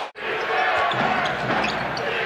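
NBA arena game sound: steady crowd noise with a basketball bouncing on the hardwood court. The sound drops out for a moment just after the start, at an edit cut between clips.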